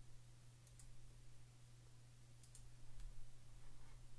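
A few faint computer mouse clicks, scattered through the seconds, over a steady low electrical hum.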